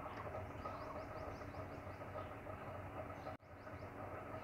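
Low steady background noise of a recording room, with a faint hum and a run of faint rapid high chirps in the first half; the sound drops out for a moment near the end, as at an edit.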